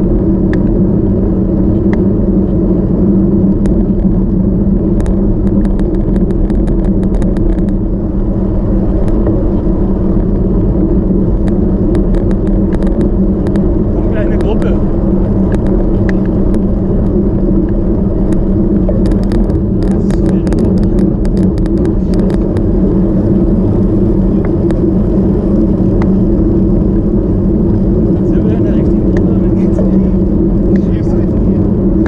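Steady rush of wind and tyre noise on the microphone of a handlebar-mounted action camera while a road bike rides at speed on asphalt, with clusters of faint clicks in places.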